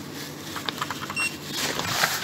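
A lift's landing call button being pressed, with a few small clicks, then one short electronic beep about a second in. A rising rush of handling noise follows near the end.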